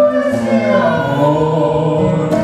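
A woman singing, with other voices singing beneath her in several layered parts.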